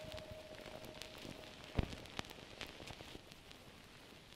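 Faint crackle and hiss with scattered sharp clicks, one louder click a little under two seconds in, while a last held note fades out in the first half second.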